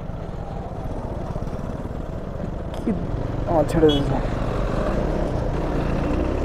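Motorcycle engine running with steady wind and road rumble as heard from the rider's seat, growing slowly louder toward the end as the bike gathers speed.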